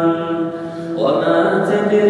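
A male voice reciting the Qur'an in melodic tajweed style, holding a long drawn-out note, easing off briefly, then starting a new phrase about a second in.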